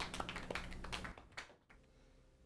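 Light, scattered applause from a small audience, cut off abruptly about a second in, leaving near silence.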